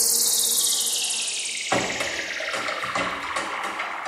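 A long whooshing noise sweep falling steadily in pitch, a transition effect in the dance's music track playing over the theatre sound system; light percussive ticks come in under it a little before halfway.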